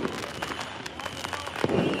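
Fireworks going off: a steady patter of sharp crackling pops, with a deep boom at the start and a longer, louder boom near the end.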